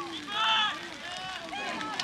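Spectators' voices from the bleachers, with one loud shout about half a second in and quieter chatter after it.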